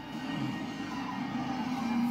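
Music from a film soundtrack playing on a television in the room.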